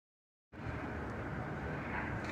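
Dead silence, then about half a second in a steady, fairly quiet hiss of background noise starts as a new recording begins, with no engine or other distinct sound in it.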